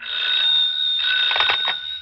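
Electric bell ringing steadily and shrilly, starting abruptly and holding for about two seconds.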